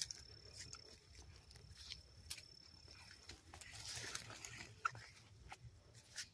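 Faint rustling and light clicks of a nylon cast net with lead sinkers being handled and gathered in the hands, with a louder rustle about two-thirds of the way in. A steady high thin tone runs under it and stops about halfway.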